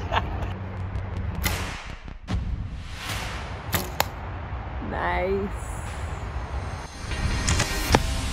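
Arrows shot from recurve bows: several sharp snaps of bowstring release and arrow strikes into hay-bale targets, in the first four seconds and again near the end. A brief rising vocal exclamation comes about five seconds in.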